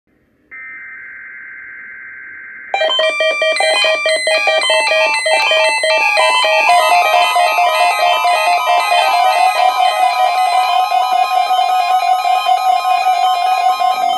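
A brief raspy digital data burst from an Emerson Research S.A.M.E. weather radio's speaker, then a loud electronic alert melody. The melody is a quick, changing run of beeping tones lasting about eleven seconds, which the radio sounds on receiving a NOAA Weather Radio Required Weekly Test.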